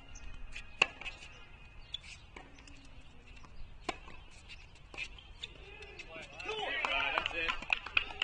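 Tennis ball struck by rackets in a rally on an outdoor hard court: sharp pops a second or more apart, the loudest about a second in. A person's voice is heard briefly near the end.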